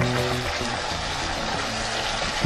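Background music that cuts off about half a second in, then the steady sizzle and bubbling of sliced mushrooms simmering in white wine in a frying pan as the wine reduces.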